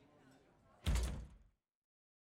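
One sudden heavy thud about a second in, deep and booming, dying away over half a second and then cut off abruptly, over a faint murmur.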